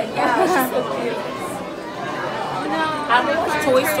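Speech only: several people chattering in a crowded indoor hall, with no other distinct sound.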